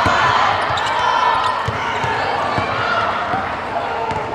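Basketball bouncing on a hardwood court floor in a run of irregular thumps, under a steady background of voices from players and spectators.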